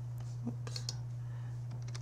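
A handful of light, separate clicks from a computer keyboard as a word starts to be typed into a text field, over a steady low hum.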